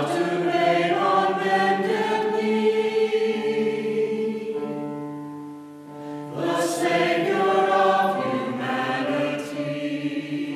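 Mixed church choir singing in long held chords. The sound fades about five to six seconds in, and a new phrase starts a moment later.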